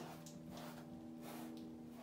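Faint strokes of a large paintbrush on canvas over a steady low hum.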